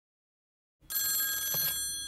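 Desk telephone bell ringing once: a fast metallic trill that starts about a second in and lasts about a second, its bell tones ringing on as it fades.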